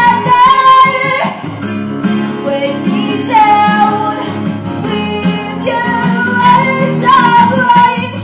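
Live acoustic band: two acoustic guitars strummed under a woman singing lead, with long held notes.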